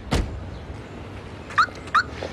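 A dull thump just after the start, a car door shutting, then two short, high yelps, each rising in pitch, about a third of a second apart near the end.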